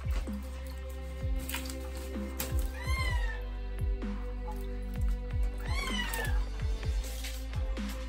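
Background music, with two short meow-like calls about three and six seconds in, each rising and then falling in pitch, from a parrot.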